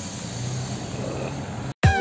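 Steady low rumble and hiss inside a parked car, cut off suddenly near the end by background music: sharp plucked guitar notes repeated about twice a second.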